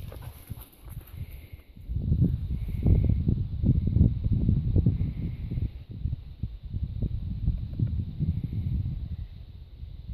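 Irregular low thudding and rumbling on the microphone, getting loud about two seconds in: footsteps and handling noise from the camera-holder running along a dirt field path.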